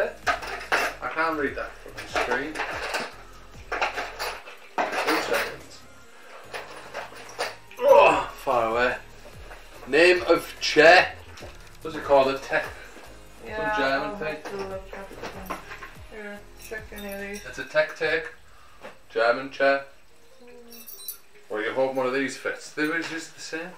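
Mostly people talking, with light clinking of small metal chair-assembly hardware and faint background music.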